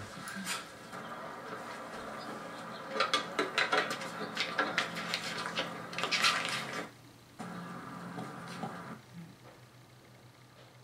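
A run of sharp clicks and metallic clatter over a steady hum, densest about three to seven seconds in, then fading to a low hum near the end.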